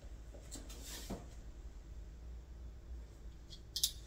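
Quiet kitchen room tone with faint scratchy handling sounds of salt being poured from a canister into a measuring spoon over a mixing bowl: a few soft scratches and ticks, and a slightly sharper pair just before the end.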